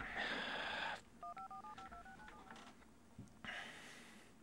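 Phone keypad touch-tone (DTMF) beeps: a quick run of about ten two-tone beeps, roughly seven a second, as a number is dialed. A second of hiss comes just before them, and a fainter hiss near the end.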